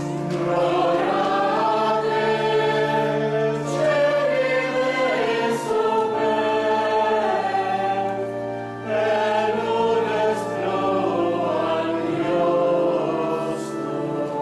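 Church choir singing a sacred piece during a sung Mass, over long-held low notes, in phrases with short breaks between them.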